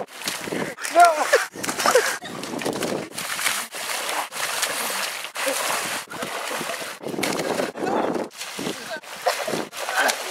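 Wet mud splashing and sloshing as bodies are thrown and thrash in a flooded mud pit, with short shouts or yells about a second and two seconds in.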